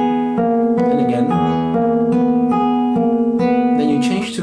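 Classical nylon-string guitar played fingerstyle: an even run of plucked notes, about three a second, over a lower note held underneath.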